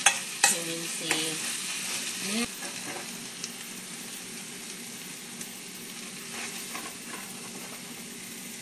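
Pumpkin curry sizzling in a hot pan as a spoon stirs and scrapes through it, with a few sharp knocks of the spoon against the pan in the first second or so. After about two and a half seconds the stirring eases and a quieter sizzle carries on while the curry is scooped out.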